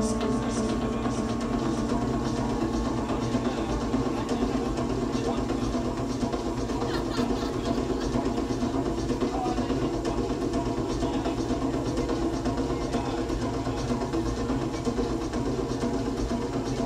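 Live electronic drone music played on synthesizer modules: a dense, steady wash of held tones over low, engine-like noise, with no beat.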